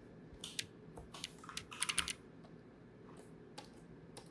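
Computer keyboard keys being pressed: a quick run of clicking keystrokes from about half a second to two seconds in, then a couple of lighter taps later.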